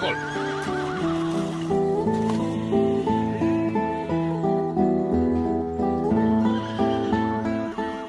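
A horse's whinny, a wavering call falling in pitch over the first two seconds, played as a radio-drama sound effect. Underneath runs an instrumental musical bridge of sustained notes changing pitch, which fades out just before the end.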